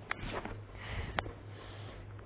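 Faint breathy sniff close to the microphone, with two light clicks, one at the start and one about a second in, over a low steady hum.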